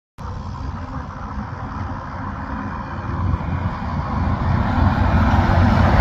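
Daewoo intercity coach and a pickup approaching along a highway: a low engine rumble and tyre noise growing steadily louder as they near.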